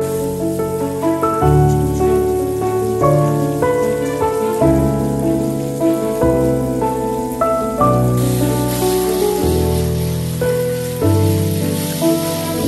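Instrumental background music with clear, changing notes throughout. Under it, the hiss of a garden hose spray nozzle rinsing a frog terrarium's mesh lid and glass tank, much louder from about eight seconds in.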